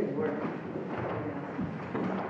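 Indistinct voices talking quietly in a room.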